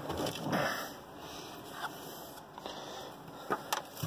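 Faint rustling and shuffling of someone moving about inside a minivan's cabin, with two short sharp clicks near the end.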